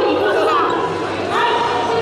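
Many voices talking and calling out at once, echoing in a large gymnasium.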